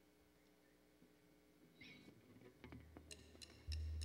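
Near silence, then faint small stage noises, and in the last second a count-in from the drum kit: light, evenly spaced ticks about four a second. Under the ticks a low electric bass note sounds, louder near the end, as the song is about to start.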